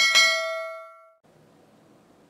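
A notification-bell ding sound effect: one bright chime with several tones at once, struck at the start and ringing out for about a second, followed by faint hiss.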